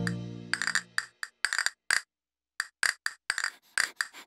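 Castanets clicking in quick rolls and single strokes in a flamenco rhythm, with a short pause midway. A held music chord fades out during the first second.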